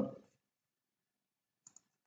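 Two quick, faint computer mouse clicks near the end, after the last syllable of a spoken word; otherwise near silence.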